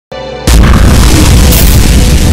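Logo intro sting: a short steady tone, then about half a second in a sudden loud deep boom that carries on under dramatic music, with a bright whoosh near the end.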